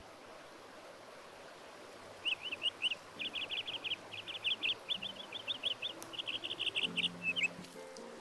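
A small bird chirping in quick runs of high notes, starting about two seconds in, with short pauses between the runs. Faint low held tones join in during the last few seconds.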